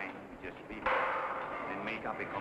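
Faint background talk, then a sudden harsh burst of noise that starts abruptly just under halfway through and lasts about a second.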